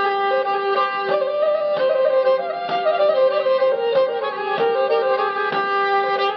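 Pontic lyra (kemençe) playing an ornamented instrumental melody over a steady drone, with a regular beat under it about once a second.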